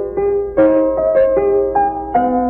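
Solo piano playing a classical piece: a melody of separate notes, several a second, over sustained lower notes, on a home recording.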